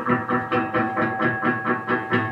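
Ibanez CMM1 electric guitar played through a Boss Katana 50 amp with delay: a quick run of picked notes, about six a second, with earlier notes ringing on beneath them.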